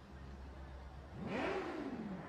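A low steady hum, then about a second in a brief engine sound whose pitch rises and then falls, like a motor vehicle revving or passing.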